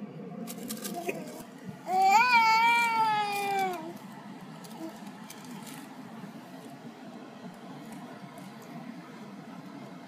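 A toddler's single drawn-out vocal sound, about two seconds long, rising and then slowly falling in pitch, about two seconds in. Before it come a few light crinkles of the paper bag he is holding.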